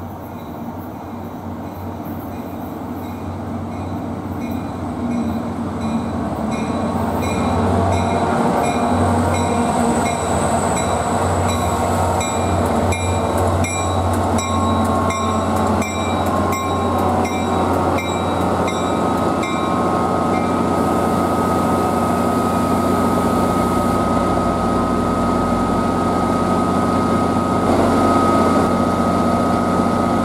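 Erie-heritage GP40PH-2B diesel locomotive pulling an NJ Transit commuter train into the station. The engine's drone grows louder as it approaches, while a regular bell-like ringing and evenly spaced wheel clicks over the rail joints run for the first two-thirds. About twenty seconds in, a steady squeal of the brakes sets in as the train slows to a stop.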